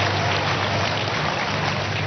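Steady loud hiss-like background noise with a low hum underneath, the same noise that runs under the preaching.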